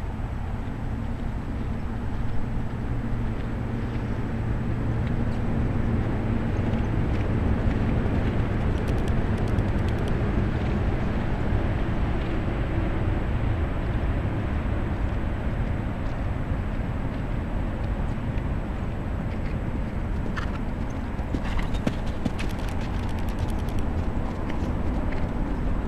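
Hoofbeats of an Arabian mare cantering on soft dirt arena footing, over a steady low rumble.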